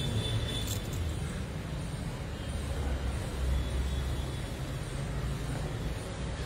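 Low rumble of road traffic, steady with slow swells in loudness.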